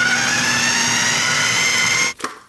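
Food processor motor running steadily, its blade chopping and puréeing a wet marinade of orange, cilantro, chipotle peppers and garlic. Its whine rises slowly in pitch as the mixture turns smooth, and it cuts off at the end.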